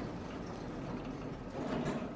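Elevator doors sliding shut: a faint, steady mechanical noise with no sharp bang.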